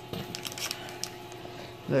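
Soft handling noises on a tabletop: a few light clicks and taps in the first second, then quieter faint rustling as packages are moved.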